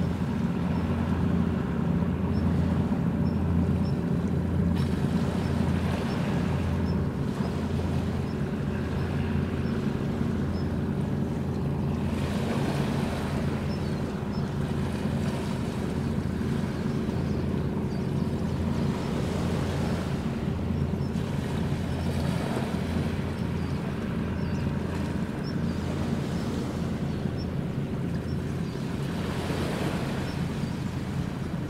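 Engines of the Towada-class replenishment ship JS Towada (AOE-422) running as it passes close by: a steady low drone, with wind and water noise over it.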